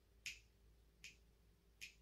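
Three faint, short clicks, evenly spaced a little under a second apart: a three-beat count-in at a slow waltz tempo, just before the guitar starts.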